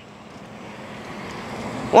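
A car driving past close by, a steady engine and tyre noise growing louder as it approaches.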